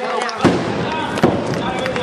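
Two sharp bangs about a second apart, over a crowd's voices and clapping.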